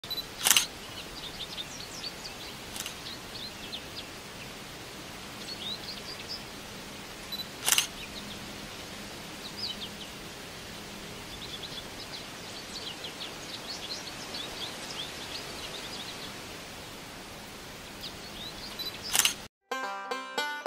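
A DSLR camera's shutter firing four separate times, sharp single clicks with the loudest near the start and about eight seconds in, over continual chirping of small birds.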